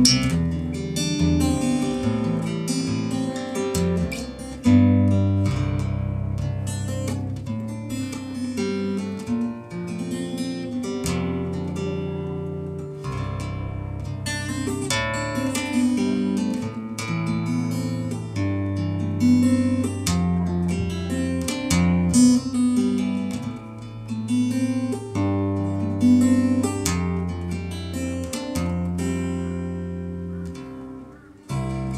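Epiphone cutaway acoustic-electric guitar played fingerstyle as a solo instrumental: low bass notes ringing under a picked melody, with a few sharply struck accents.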